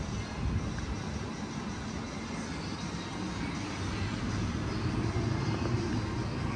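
Steady outdoor city ambience: a continuous low rumble with a hiss above it and no distinct events.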